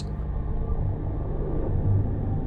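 Low, steady drone of ambient background music, with no beat.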